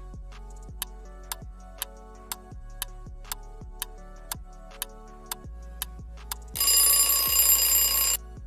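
Quiz countdown-timer sound effect: a clock ticking about twice a second over background music, then an alarm-clock-style ring for about a second and a half near the end as the time runs out.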